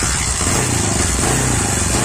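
Bajaj Boxer motorcycle's single-cylinder four-stroke engine running steadily, just after being kick-started.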